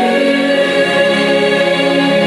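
Mixed gospel choir singing long held chords, the harmony shifting about a second in.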